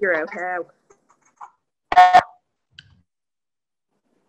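Speech over a video call: a few quick words at the start, then one short, loud voiced sound about two seconds in.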